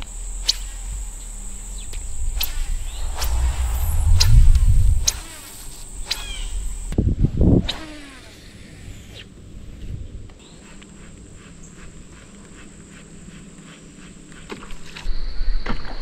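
Low rumble and scattered knocks from a chest-mounted camera being handled and carried, under a steady high insect drone. Later comes a quieter stretch of fine, rapid ticking from a fishing reel being wound in.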